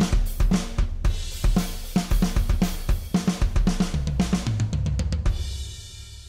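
Sampled classic rock drum kit (GetGood Drums One Kit Wonder Classic Rock) playing a programmed rock groove at 114 BPM with kick, snare, hi-hat and two crashes together. The groove ends in a fill that starts on the snare and runs down the toms, and a cymbal rings out and fades near the end.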